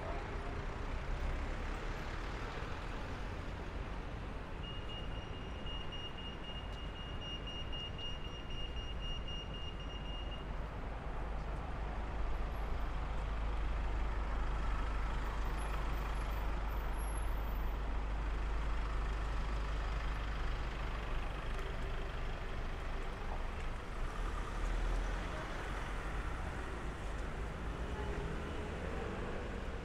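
Traffic on a busy road: a steady rumble of passing vehicles, trucks among them. About five seconds in, a pedestrian crossing's signal sounds a high, even beep for about six seconds and then stops.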